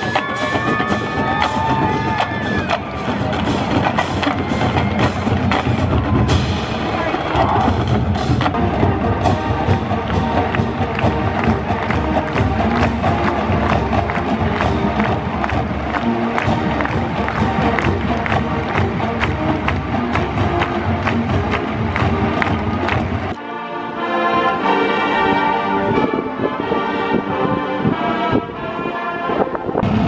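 A college marching band, brass with a drumline, playing loudly to a steady driving beat. About 23 seconds in the percussion drops back and the brass holds sustained chords.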